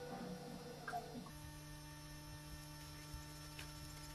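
Steady low electrical hum, with a few faint ticks over it. A soft tonal sound cuts off about a second in.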